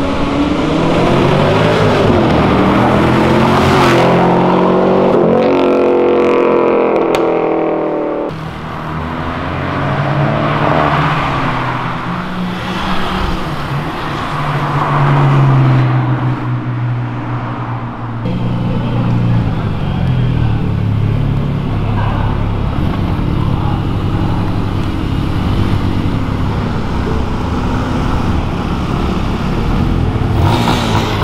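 Performance cars accelerating past one after another. In the first eight seconds an engine revs up with rising pitch in steps and cuts off abruptly. Another engine's low note is loudest about fifteen seconds in, and a lower engine hum follows.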